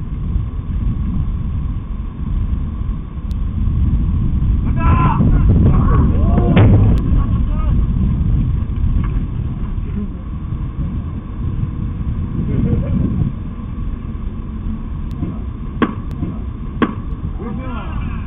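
Open-air ballfield ambience: a loud low rumble that swells and fades, with faint distant voices about five seconds in and two sharp knocks about a second apart near the end.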